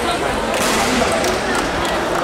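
Sharp clicks of a table tennis ball struck in a rally, the clearest about half a second in, over the steady chatter of a busy sports hall.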